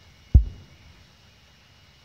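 A single short, low thump about a third of a second in, typical of the handheld camera being knocked or shifted against its microphone. After it comes a faint steady hiss.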